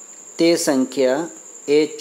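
A voice speaking Gujarati, reading a maths problem aloud, with a steady high-pitched whine running continuously underneath.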